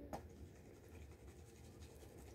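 Faint scratching and swishing of gravel and water in a plastic gold pan being panned in a tub of water, with one light tick just after the start.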